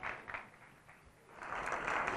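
Studio audience applause: a few scattered claps at first, then applause swelling from about halfway in.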